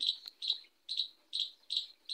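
A small bird chirping in the background: short, high chirps repeating evenly, about two or three a second.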